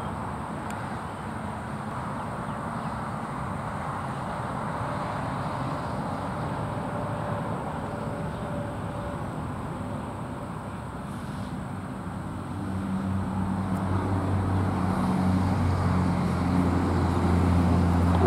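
Steady outdoor background rush with a motor vehicle's low engine hum that comes in and grows louder about two-thirds of the way through.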